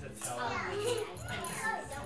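Young children babbling and chattering as they play.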